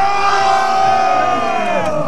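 A group of men's voices holding one long shouted cheer together as a drinking toast, the pitch sliding down near the end as it dies away.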